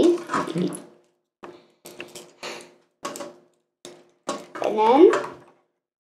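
Plastic joints and parts of a Transformers Optimus Prime action figure clicking and creaking in several short bursts as it is twisted and folded by hand. The joints are a touch stiff. A child's voice mumbles at the start and again near the end.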